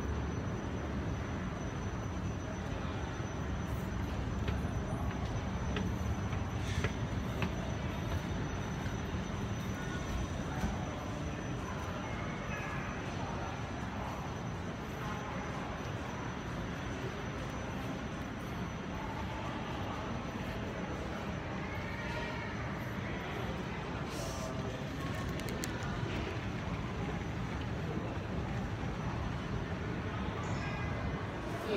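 Steady low rumble of an MRT station concourse, with a thin high whine over it and faint voices in the background.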